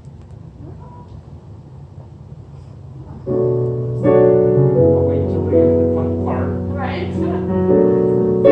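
Casio digital piano starting a jazz tune about three seconds in, with sustained chords over held bass notes and a second, louder chord a moment later. Before it there is only a low hum and brief laughter.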